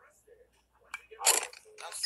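A sharp crack about a second in, like a baseball bat striking the ball, followed at once by a louder, harsh burst of noise lasting a fraction of a second.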